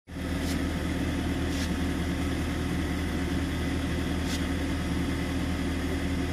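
A motor vehicle engine idling steadily, with three faint clicks over it.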